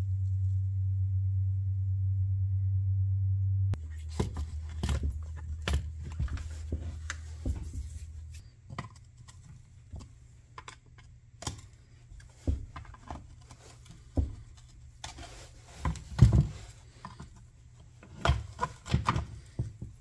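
A low steady hum that drops in level about four seconds in and fades out a few seconds later, with scattered clicks and knocks throughout as tools and parts of a Craftsman chainsaw are handled on a wooden workbench.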